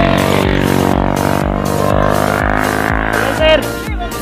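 Background music with a steady beat and sustained, droning chords, with a short vocal-like glide near the start and another near the end.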